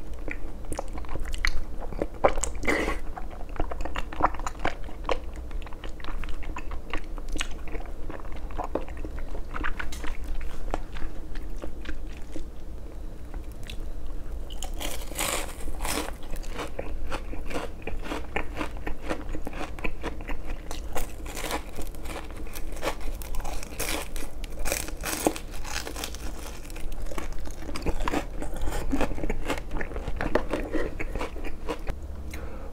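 Close-miked eating: chewing of chewy glass noodles in creamy rose tteokbokki sauce, then, about halfway through, bites into shrimp tempura with loud, crisp crunching of the fried batter.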